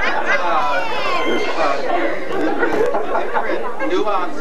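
Several people talking over one another, with a woman laughing at the start.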